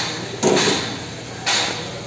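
Compressed air hissing in short pulses from the Maximator air-driven hydraulic pump of a bolt-tensioning set. Each hiss starts sharply and fades, about one a second.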